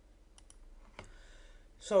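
Computer mouse clicks: a quick faint pair about half a second in, then a louder single click at about one second.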